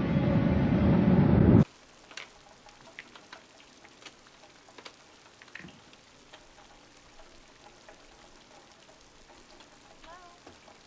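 A swelling orchestral music sting that builds and cuts off suddenly about a second and a half in, followed by faint steady rain with scattered soft ticks and clicks.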